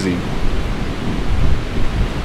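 Wind blowing on the microphone: a steady, gusty rumble with no distinct events.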